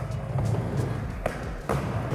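Background music over a skateboard rolling on a mini ramp, with a short knock a little past halfway.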